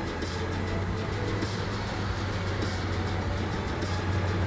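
Background music playing quietly under a steady low hum, with no clear handling sounds standing out.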